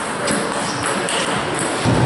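Table tennis ball knocking off paddles and the table in a rally, about five quick sharp clicks, over the steady hubbub of a busy hall.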